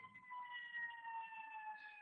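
A faint siren, one tone with overtones gliding slowly downward in pitch.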